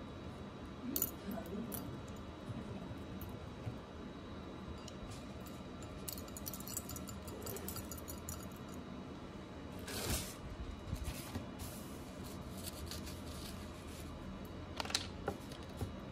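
A toothbrush scrubbing a small gold ring in a cut-glass bowl, with a few sharp clinks of metal on glass about a second in, around ten seconds in and near the end.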